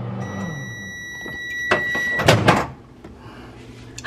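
Old microwave oven's running hum stops as its timer runs out, and a single ding of its mechanical bell rings out and fades over about two seconds. Then a couple of clicks and a knock as the door is unlatched and opened.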